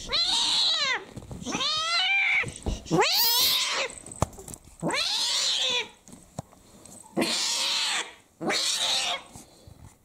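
Snow Lynx Bengal cat yowling in labour: about six loud, drawn-out cries, each just under a second long, rising then falling in pitch, the later ones harsher and hoarser.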